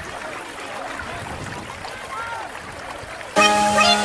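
Swimmers splashing in a pool, with faint children's voices in the background. Background music comes back in loudly near the end.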